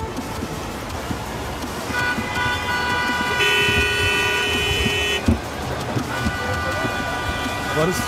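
Night street traffic with car horns: one horn held for about three seconds from about two seconds in, then another horn sounding over the last two seconds.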